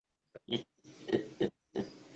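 A person laughing hard in several loud bursts, with breathy gasps between them.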